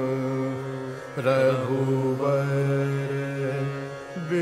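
Hindustani classical devotional music: long held notes that slide between pitches, sung wordlessly by a male voice over a steady drone, with a new phrase entering about a second in.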